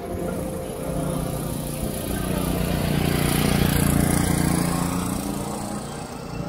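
A motor vehicle driving past on the road close by. Its engine and tyre noise swells to a peak a little past the middle and then fades away.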